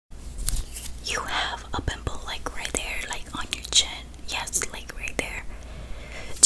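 A woman whispering close to the microphone, breathy and unvoiced, with many sharp clicks scattered between the whispered sounds.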